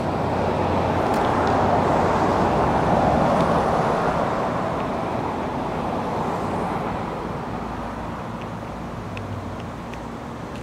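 Traffic noise from a road vehicle passing by, the tyre and engine noise swelling to its loudest about three seconds in and then slowly fading away.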